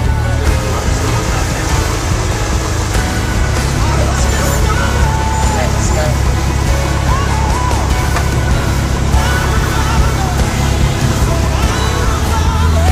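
Steady engine drone of a single-engine Cessna heard inside the cabin, with background music playing over it.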